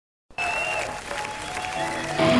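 Crowd applause and cheering on a live concert recording, starting about a third of a second in, with a few thin sustained instrument tones over it.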